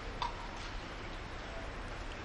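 A pause between phrases of a speech: low, steady background hiss of the hall's room tone, with one faint click about a quarter second in.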